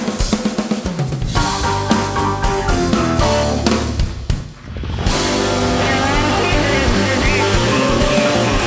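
Live rock'n'roll band playing, with drums at the front and electric and acoustic guitars and upright bass behind. The band drops out briefly about four and a half seconds in, then comes back in full.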